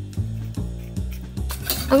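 A metal spoon and whisk clinking a few times against a copper saucepan as passion fruit pulp is scooped in, over background music with a steady low bass line.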